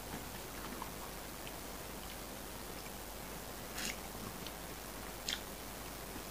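Quiet chewing of a mouthful of fried chicken noodles, with two short mouth clicks about four and five seconds in.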